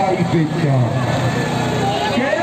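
Two diesel tractor engines, a New Holland and a Sonalika, running under heavy load as they pull against each other in a tug-of-war, with the engine note falling about half a second in. A man's voice is heard over them.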